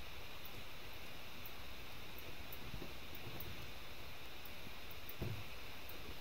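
Steady low background hiss, with a soft low thump about five seconds in.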